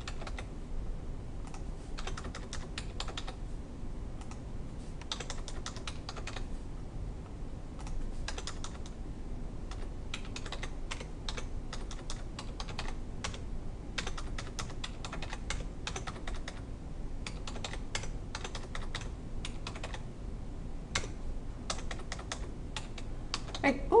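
Computer keyboard typing: quick runs of keystrokes about every two seconds with short pauses between, each run entering a number into a spreadsheet cell and pressing Enter.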